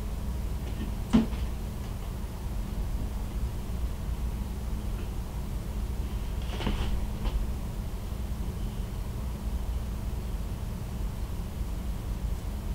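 Trimming and handling a spun deer-hair fly head: a sharp click about a second in and a couple of faint ticks just past the middle, over a steady low hum.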